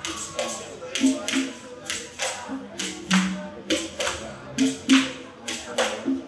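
Hand-held rattles shaken in an uneven beat, about two sharp shakes a second, with short low notes sounding between the strokes.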